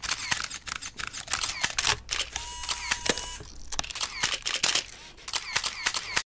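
Rapid, irregular clicking of many camera shutters, with a steady beep lasting about a second midway through.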